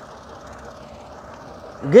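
Steady background noise during a pause in speech; a man's voice resumes near the end.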